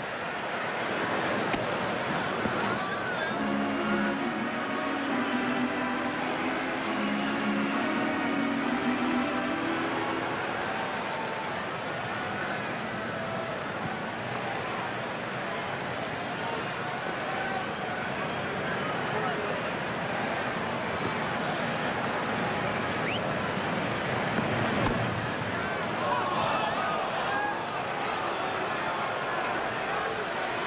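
Ballpark crowd noise from the stands, a steady murmur throughout, with a few held tones between about three and ten seconds in.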